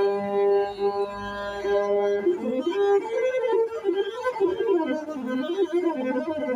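Masinko, the Ethiopian one-string bowed lute, played solo. A long held bowed note lasts about two seconds, then gives way to a melody that slides up and down in pitch.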